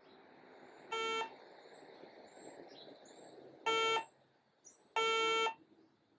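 Sensit HXG-2d combustible gas leak detector's buzzer sounding three buzzy beeps during its warm-up and auto-zero cycle. The first comes about a second in, the second near four seconds and the third, slightly longer, just after five seconds.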